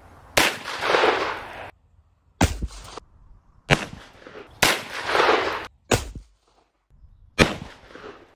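Taurus Tracker 627 .357 Magnum revolver firing full-power .357 Magnum rounds: six sharp reports, the two loudest each followed by about a second of ringing echo.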